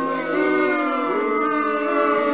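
A drawn-out mock-crying wail played as a sound effect: long held notes in several layers that sag and slide slowly in pitch.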